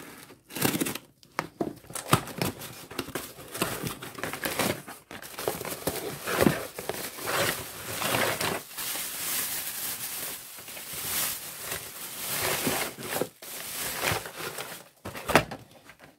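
Cardboard shipping box being opened: the packing tape along its seam slit with a knife and torn, then the flaps pulled open and packing material rustling and crinkling as a blister-carded diecast car is lifted out. Irregular crackling and scraping, busier in the second half.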